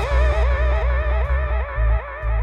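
Live dub-style band music: a swooping electronic effects tone repeats about four times a second over deep bass notes.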